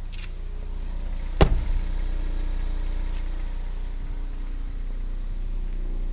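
A car door shuts once with a sharp knock about a second and a half in, over the steady low hum of the 2015 Ford Escape's 2.0L EcoBoost turbo four-cylinder idling.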